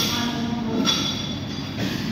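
Wrestlers grappling on a training mat: a steady rumble of hall noise with three sharp slaps or thuds about a second apart.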